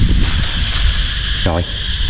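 Strong wind buffeting the microphone, with a rumble that comes and goes over a steady high-pitched hiss.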